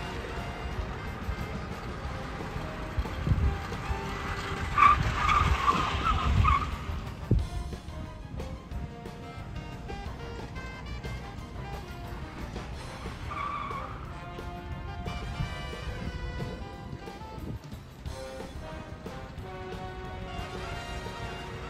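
Tyres of a Honda Civic skid car squealing as it slides on the skid pad: a longer, wavering squeal about five seconds in and a shorter one around thirteen seconds. Background music plays throughout.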